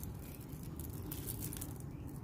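Light rustling and crinkling from hands tying plant stems and leaves to a mesh-wrapped support pole with plastic twine, in small scattered ticks over a steady low background hum.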